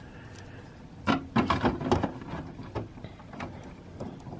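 Plastic parts of a Robot Spirits Guair action figure clicking and knocking as it is handled and posed with its sword. The clicks come in a short cluster starting about a second in.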